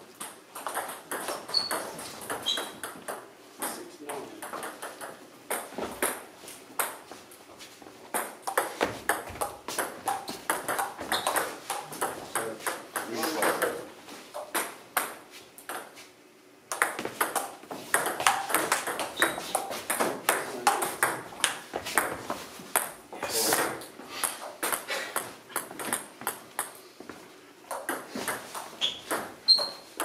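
Table tennis rallies: the celluloid-type ball clicking off bats and table in quick, uneven strokes, with a short break about sixteen seconds in.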